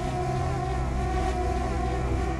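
Small folding quadcopter drone flying just after a hand launch, its propellers giving a steady, even hum.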